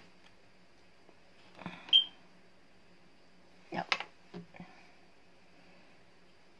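Kitchen handling sounds of a round stainless steel cutter and rolled dough on a worktop: one sharp knock with a brief high ring about two seconds in, then a cluster of clicks and rustling just before four seconds and two small knocks, over a faint steady hum.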